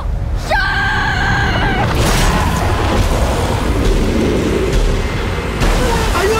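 A high-pitched scream held for about a second and a half, then a loud, sustained rumbling boom with a rushing noise over it, dropping off shortly before the end.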